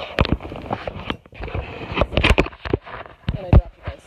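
Close handling noise from the recording device being picked up and moved: a rapid, irregular run of loud knocks, clicks and rustles.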